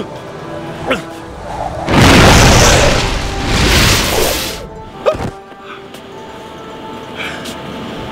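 A loud rushing whoosh-and-boom sound effect of an air blast, about two and a half seconds long and swelling twice, starting about two seconds in, for a superpowered airbending launch into the air. A short thump follows about five seconds in, over background music.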